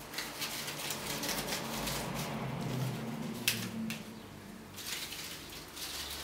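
Leaves and stems rustling and crackling as salal greenery is worked into a hand-held flower bouquet, with a sharper crackle about three and a half seconds in.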